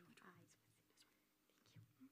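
Near silence with faint, low speech, a few quiet words at the start and again briefly near the end.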